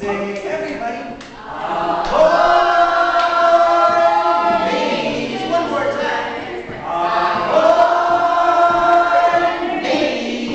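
Unaccompanied group singing: a man leading young children, the voices held out in two long phrases, the second beginning about seven seconds in.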